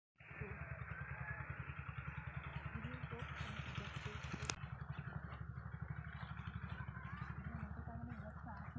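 A small engine running steadily with a fast, even low chug, and one sharp click about halfway through.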